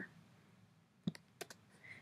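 Near silence broken by two faint, sharp clicks a little after a second in.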